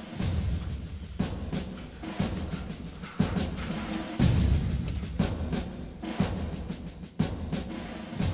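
Dramatic background music built on deep timpani-like drum strikes, about one a second.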